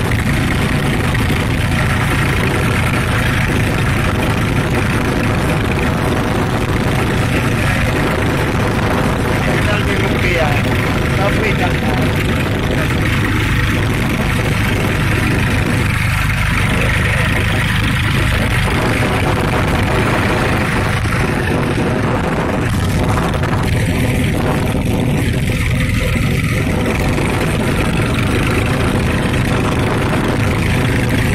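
Tractor engine running steadily while the tractor drives, heard loud and close from the driver's seat.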